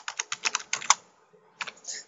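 Computer keyboard typing: a quick run of keystrokes through the first second, a short pause, then a few more keys near the end.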